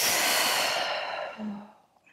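A woman's forceful open-mouth exhale in a yoga breathing cue, a long breathy sigh that fades over about a second and a half and ends in a brief low hum.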